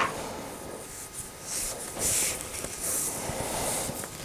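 Basting thread being pulled out through linen fabric, with the cloth rustling as it is handled: a few soft, hissing rasps.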